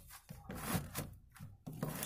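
A screwdriver and hands scraping and rubbing against plastic parts in a car engine bay: several short, irregular rasping strokes.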